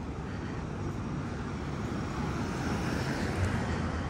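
A car driving past on the street, its engine and tyre noise swelling to a peak about three seconds in, over a steady low rumble of city background.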